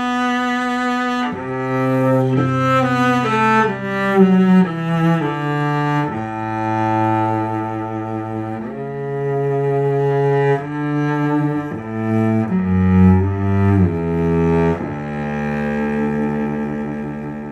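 Slow instrumental music in a low register: long held notes, with a quicker run of notes a couple of seconds in and again near the end.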